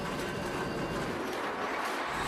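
Machinery in a charcoal briquette plant running with a steady mechanical noise.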